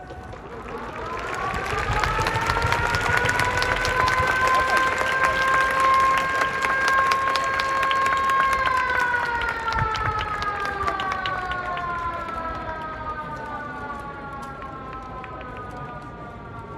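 Koshien Stadium's game-end siren: one long wail that rises over about two seconds, holds steady, then slowly falls away from about halfway through, sounding the end of the game. Crowd clapping runs underneath.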